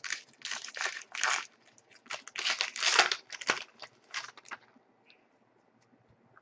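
A trading-card pack wrapper being torn open and crinkled by hand, in a run of irregular rustling bursts that dies away about three-quarters of the way through.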